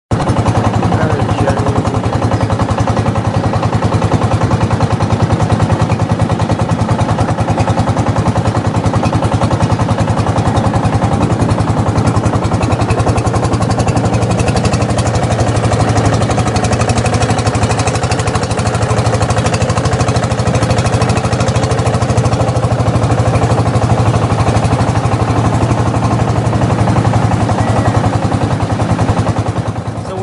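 Motorboat engine running steadily under way, a loud unbroken drone with a rapid even pulse that holds a constant speed.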